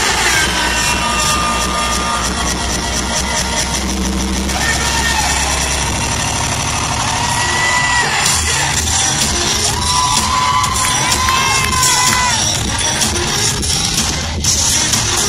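Live concert music over an arena sound system, heard from within the crowd, with fans cheering and screaming over it. The heavy bass drops out about four and a half seconds in.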